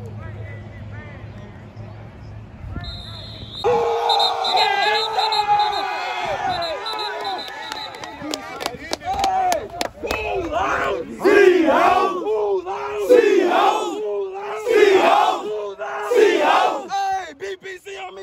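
A football team shouting a chant together in a pregame huddle. It starts about four seconds in, and in the second half the voices rise into loud yells repeated every second or two.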